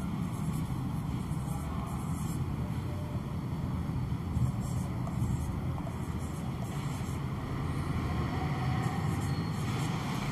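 Marker pen stroking on a whiteboard as numbers are written, faint short scratches over a steady low background rumble.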